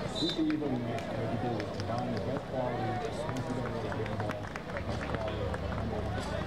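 Voices of people talking around an outdoor basketball court, with irregular knocks of basketballs bouncing on the hard court surface. A short high beep sounds just after the start.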